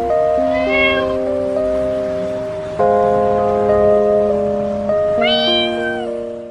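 A cat meowing twice, short calls that rise in pitch, about half a second in and again near the end, over background music with sustained notes.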